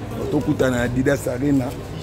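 A man's low voice close by, speaking with words that cannot be made out.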